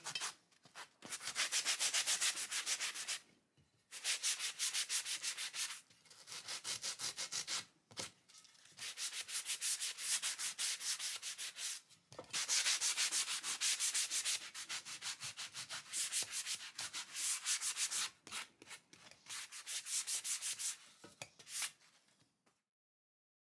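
Hand sanding block with sandpaper rubbed quickly back and forth along a wooden guitar neck, sanding off dried clay-mud stain. The strokes come in runs of a few seconds, with short pauses between.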